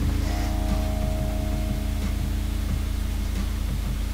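Instrumental close of a song: a sustained low chord with a soft, regular pulse underneath, and a brief higher held note in the first half.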